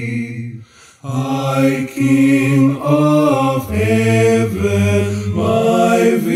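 Male a cappella vocal harmony, one man's voice overdubbed in four parts, singing a slow hymn in long held chords. The chord breaks off briefly about a second in, then the singing resumes.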